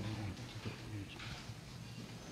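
Faint, indistinct talk over low room noise and a steady low hum, with a few small clicks.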